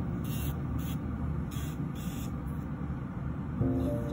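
Electric nail drill (e-file) with a small barrel bit running against the nail around the cuticle, with a few short hissing passes in the first half, over a steady low hum. Background music plays throughout, with sustained notes entering near the end.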